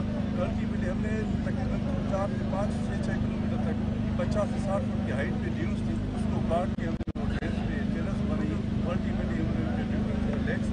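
A man's voice speaking indistinctly over a steady low hum and background rumble, with a brief dropout about seven seconds in.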